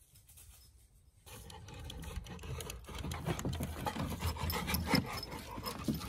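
Wood rubbing and scraping with many small knocks: a dog carrying a long stick across a wooden boardwalk. It starts suddenly about a second in and grows somewhat louder.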